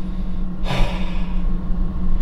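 A man's short, breathy exhale, like a sigh or a laugh let out through the nose, starting about two-thirds of a second in and lasting under a second. It sits over a steady low hum inside the car.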